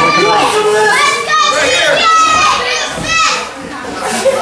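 Several high-pitched voices, children's, shouting and yelling from the crowd, overlapping one another and easing off near the end.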